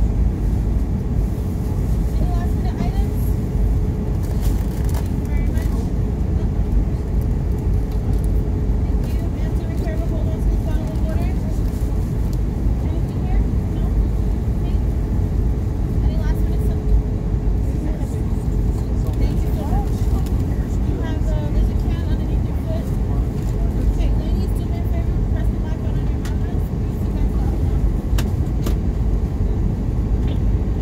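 Steady cabin noise of an Airbus A320 airliner in descent, heard from inside the cabin: the even rush of engines and airflow over the fuselage, with a faint steady hum running through it.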